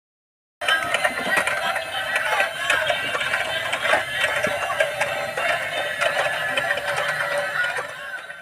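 Tinny electronic tunes from battery-powered bump-and-go Tayo toy vehicles, with the clicking of their drive gears, starting about half a second in.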